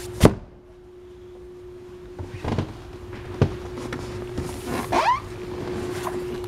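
Hinged fiberglass seat lids over a boat's under-couch storage compartments being shut and lifted: a sharp thunk about a quarter second in, two lighter knocks a little under a second apart near the middle, and a short squeak near the end.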